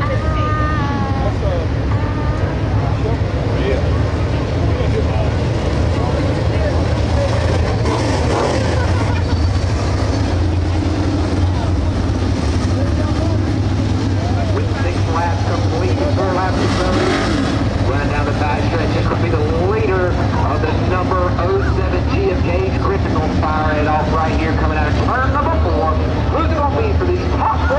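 A pack of dirt late model race cars with GM 602 crate small-block V8 engines running together around the dirt oval, a steady low engine rumble throughout. Voices talk close by over the engines.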